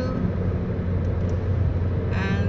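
Steady road and engine drone of a car cruising on a highway, heard from inside the cabin, with a constant low hum.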